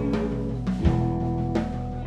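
Live alt-rock band playing an instrumental passage between sung lines: electric guitars holding notes over bass guitar and drum kit, with a drum hit about a second in.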